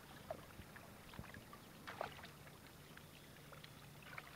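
Faint kayak paddling: water dripping and trickling off the paddle blades with small splashes, the clearest about a third of a second in and about two seconds in.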